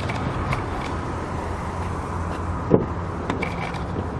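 A steady low hum with outdoor background noise, and a short knock about three-quarters of the way through as an SUV's rear side door is unlatched and swung open.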